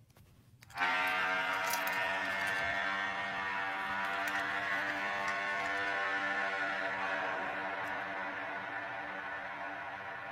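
A single long horn blast, a tribal war-horn call, that starts abruptly about a second in and holds one steady pitch, slowly fading.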